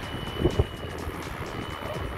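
Electric RC helicopter with Flywing Bell 206 electronics and a two-bladed rotor running at flight speed as it lifts off, with a steady high whine. Wind buffets the microphone throughout.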